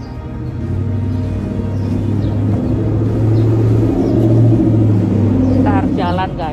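A motor vehicle drives past close by on the street: a low engine rumble that grows louder over several seconds, peaks near the end and then begins to fade.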